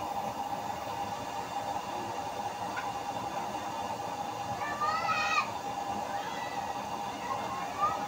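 Used-oil burner stove with a blower fan running steadily: a constant rushing noise with a steady whine. A high, sliding call rises over it about five seconds in.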